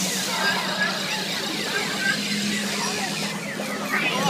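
Steady hiss of water jets spraying at a splash pad, with people's voices and a low steady hum underneath.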